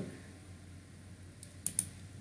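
A few light computer mouse clicks close together about a second and a half in, over a low steady hum.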